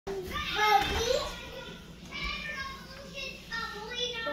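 Toddlers babbling and calling out in high voices, in short bouts with pauses between them, the loudest about a second in.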